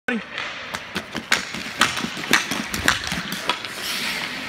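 Sharp clacks of a hockey stick blade striking the puck and the ice during stickhandling, irregular at roughly two a second.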